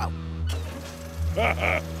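A ship's deep horn sounding one long, steady note.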